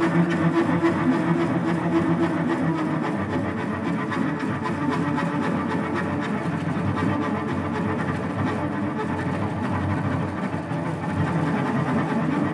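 Solo cello, bowed, in a free improvisation: held low notes at first, then a dense, rough, grainy bowed texture with a fast flutter, at a steady level.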